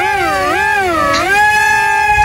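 A wailing voice-like note laid over the soundtrack: it wavers up and down in pitch twice, then settles into a long steady held note about a second in.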